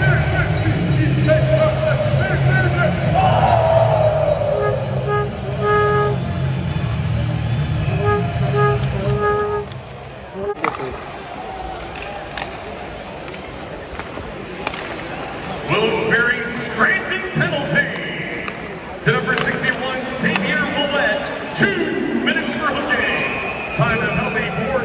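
Music over an ice-hockey arena's PA with crowd noise, played while a Bears goal celebration is on the video board. About ten seconds in, it cuts to quieter arena crowd noise and nearby voices, with a few sharp knocks from play on the ice.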